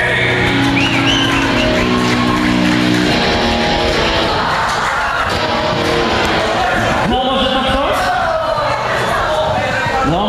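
Live rap-rock band playing loud: electric guitars and drums, with a held chord ringing for about the first three seconds, then shouted vocals over the band.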